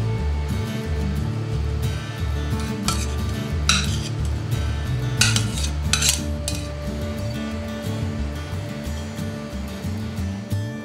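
A frying pan scraping and clinking against a utensil a few times, about three to six seconds in, as the mushroom and oil topping is tipped out of it. Background music plays throughout.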